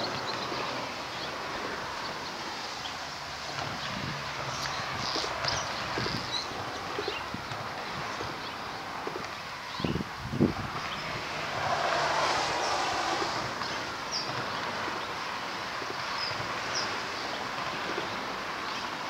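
Swallows calling with short, high chirps scattered throughout, over a steady rush of wind noise on the microphone. Two thumps come about ten seconds in, followed by a louder rushing swell.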